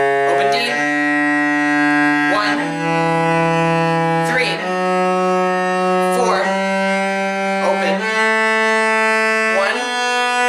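Cello playing the D major scale slowly upward in long bowed notes, each held about two seconds before the next, higher one.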